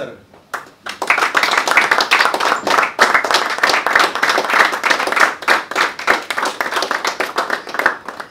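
A small group of people clapping by hand. A few scattered claps come first, then steady applause from about a second in, stopping just before the end.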